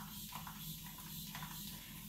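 Quiet room tone: a steady low hum and hiss, with a few faint soft rustles.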